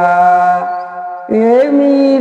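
An elderly man's voice singing a Hindi devotional bhajan in a chant-like folk style. He holds a long sung note that fades away. About a second and a half in, a new phrase starts with an upward swoop in pitch and is then held steady.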